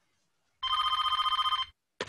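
A telephone ringing once in a recorded listening track: a single trilling ring of about a second, starting about half a second in.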